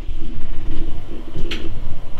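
Handling noise from a hand-held camera being swung round: low, uneven rumbling and rubbing on the microphone, with one sharp click about one and a half seconds in.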